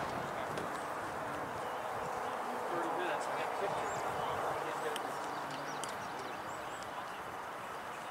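Distant voices of players and spectators calling out across a soccer field over a steady background murmur, with a few faint sharp taps.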